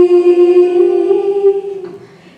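Girl's voice holding a long sung note at a steady pitch through a microphone, fading out near the end.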